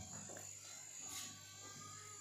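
Faint steady low hum with a thin, high, steady whine above it; little else is heard.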